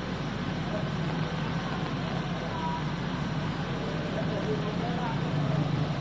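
Outdoor street ambience: a steady low hum of traffic with faint distant voices.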